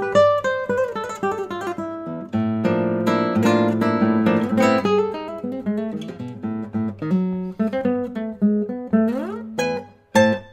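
Solo classical guitar, fingerpicked, playing a flowing piece of plucked notes and chords. A quick rising run comes near the end.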